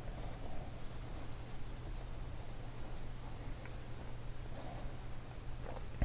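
Faint soft rustling and rubbing of hands handling and folding crocheted cotton fabric, over a steady low room hum.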